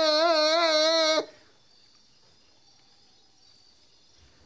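A voice holding one long wailing note with a wavering vibrato, cut off abruptly about a second in. After that only a faint hiss remains.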